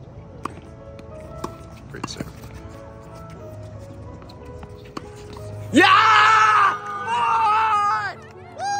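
Tennis balls struck by rackets in a rally, a few sharp pops over background music. About six seconds in, loud excited screaming and yelling breaks out, two bursts of cheering as the point is won.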